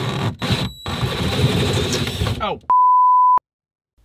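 Power drill boring a 20 mm hole in a water tank: a steady high motor whine under the grinding of the bit, in a few spurts for about two and a half seconds. Then a man's "Oh" and a loud single-tone censor bleep covering a word.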